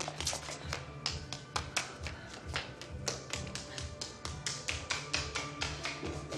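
Quick, irregular footsteps on a stairwell's steps as someone runs up them, heard over a tense film score of low held tones.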